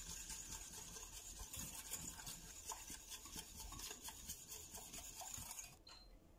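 Hand wire whisk beating a liquid mix of egg yolks, sugar and cream in a stainless steel saucepan: a fast, steady scraping and ticking of the wires against the metal pan. It stops just before the end.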